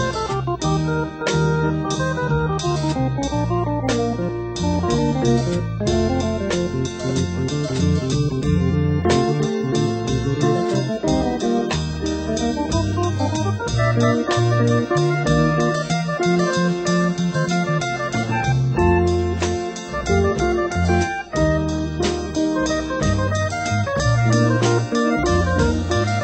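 Instrumental passage of late-1960s rock: guitar and organ over a moving bass line, with a steady beat.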